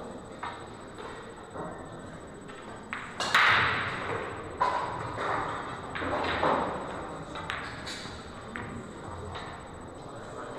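Billiard balls clicking and knocking in a pool hall, a scattering of sharp single clicks with a louder clatter about three seconds in, over faint voices.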